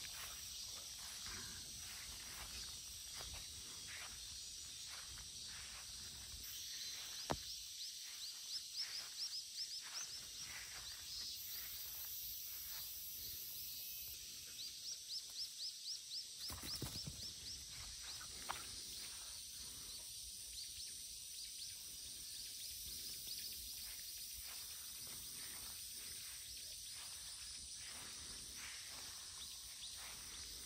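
Quiet outdoor ambience: a steady high-pitched insect drone, with two runs of rapid ticking chirps, one about seven to ten seconds in and one around fifteen seconds in. Scattered faint thumps.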